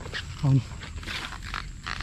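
Rustling and brushing of dry grass and stalks being pushed aside by hand, in a series of short, irregular strokes.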